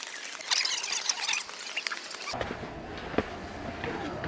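Many short, high-pitched squeaks and chirps in quick succession, cut off sharply about two seconds in. After that comes quieter outdoor ambience with a few light clicks.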